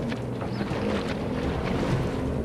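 Water splashing and churning as two bull hippos wrestle jaw to jaw in a river, with a low rumble underneath.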